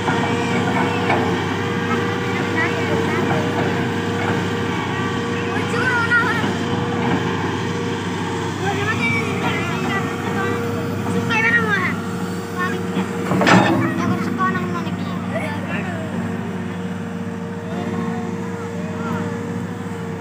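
Hitachi Zaxis 210LCH hydraulic excavator running steadily as it digs soil with its bucket: a constant engine drone with a steady high tone over it. One sharp knock sounds about two-thirds of the way through.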